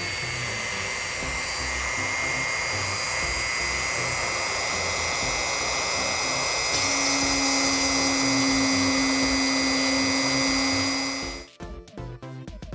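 Dremel rotary tool running at high speed with a length of PLA filament in its collet, the spinning filament pressed into the seam between two PLA 3D-printed pieces to friction-weld them: a steady high whine. A lower steady hum joins about seven seconds in, and the tool cuts off sharply shortly before the end.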